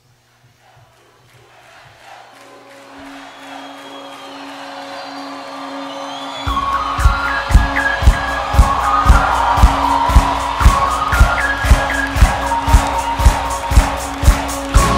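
Music fades in slowly over a held low keyboard tone. About six and a half seconds in, a drum beat enters: a steady kick about twice a second, with hi-hat or cymbal ticks, played on a drum kit against the song's track.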